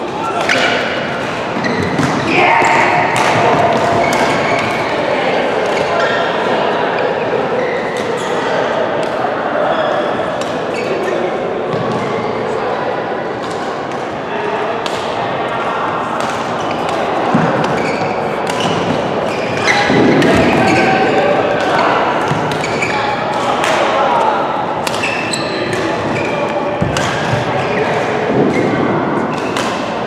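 Badminton rackets hitting a shuttlecock in a rally, sharp repeated hits echoing in a large sports hall, over continuous indistinct chatter of many voices.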